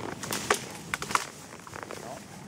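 Horse moving through forest undergrowth: leaves and brush rustling, with three sharp snaps of twigs around the middle.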